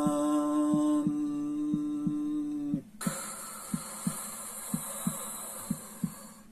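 A voice chants the mantra, holding one steady note that ends about three seconds in, followed by a long breathy hiss. Soft, heartbeat-like thumps pulse underneath at about three a second.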